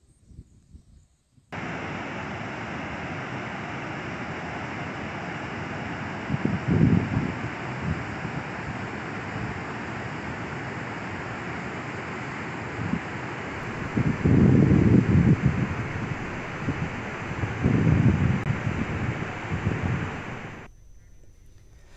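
Water rushing out through a reservoir's open spillway gates, a steady rushing that starts about a second and a half in. Wind buffets the microphone in three low gusts, the longest near two-thirds of the way through.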